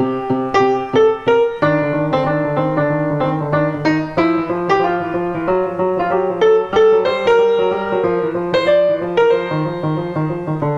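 Grand piano: a left-hand part keeps up a steady eighth-note pulse in the low register while the right hand plays a jazz line over it, with a continuous run of struck notes several times a second.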